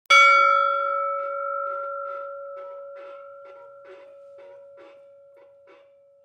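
Logo intro sting: a single bell-like chime struck right at the start, ringing on and slowly fading, over a soft pulse of short notes about twice a second.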